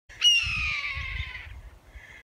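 A hawk's single hoarse scream, starting loud and falling in pitch as it fades over about a second and a half, over a low rumble.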